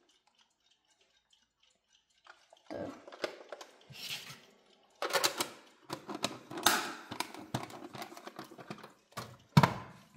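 Handling a hard plastic clock case: after a couple of seconds of near silence, irregular clicks, taps and clattering of plastic. The clatter thickens about halfway through, and one sharp knock comes near the end as the clock is set down on a wooden shelf.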